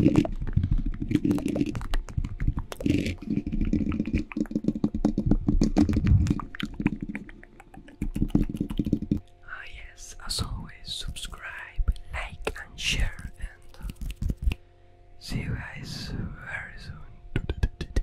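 Hands rubbing and tapping directly on a Blue Yeti microphone's grille: a dense, crackly rubbing with many clicks for about the first nine seconds. Then the rubbing stops and close, whispered mouth sounds go straight into the microphone in two short spells.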